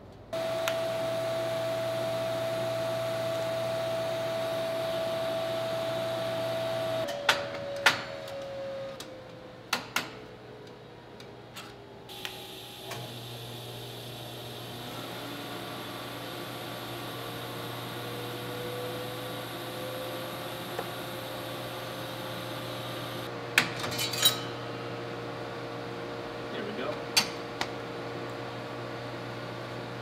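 TIG welding arc buzzing steadily, its hum shifting slightly in pitch. It breaks off about twelve seconds in and strikes again a second later, with a few sharp metal clinks scattered through.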